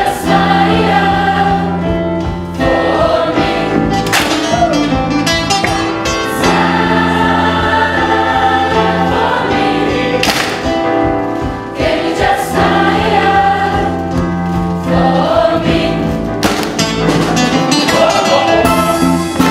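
Large mixed gospel choir of adults and children singing together in harmony, holding long chords that change every few seconds.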